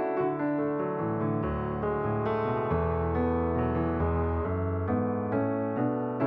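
Background piano music: a steady stream of notes over low bass notes that change about once a second.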